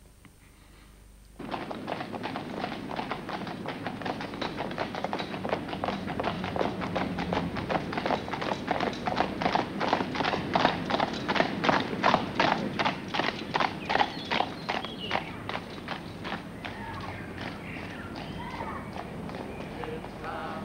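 Hooves of two horses trotting on a paved road: a steady, rhythmic clip-clop that starts suddenly about a second in. It grows louder toward the middle and thins out over the last few seconds.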